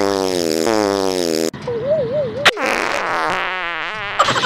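Prank fart sound effect: a long farting blurt that falls steadily in pitch, then a shorter wavering one, a click, and a sputtering third near the end.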